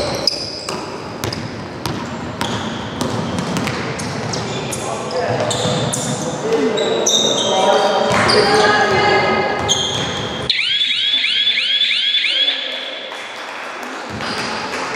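Women's basketball game on a wooden gym floor: a ball bouncing, sneakers squeaking and players calling out, echoing in a large hall. About ten seconds in the low court noise drops away and a quick run of about six high squeaks follows.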